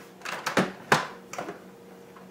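Plastic clicks and knocks from the lid and work bowl of a KitchenAid food processor being handled, about five sharp clicks in quick succession.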